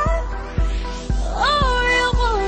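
Pop song with a female lead vocal over a steady beat of low drum hits about twice a second; the singer's note swoops up about one and a half seconds in, then eases down.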